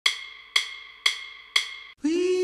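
A hard percussion click, like a wood block, struck four times at an even two beats per second, each strike ringing briefly and fading: a count-in just before the singing starts.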